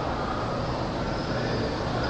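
Steady background noise with a faint low hum, unchanging throughout.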